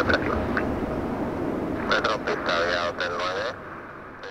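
Air traffic control radio voice over the low rumble of a departing Boeing 777-300ER's jet engines. Both fade out near the end.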